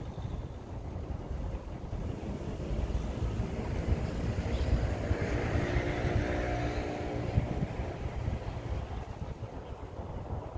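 Wind rumbling on the microphone, with a motor engine passing by: it grows louder from about three seconds in and fades away after about eight seconds.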